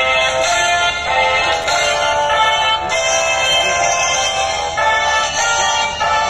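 Music of sustained held chords that change every second or so.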